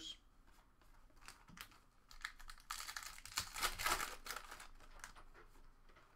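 Trading cards and their foil packaging being handled by hand: a few light clicks of cards, then about two seconds of dense crinkling rustle.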